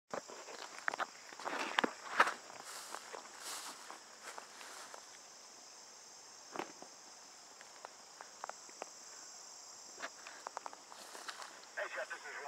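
A steady high-pitched insect chorus, with footsteps and rustling through grass that are busiest in the first two seconds, then a few scattered clicks and knocks.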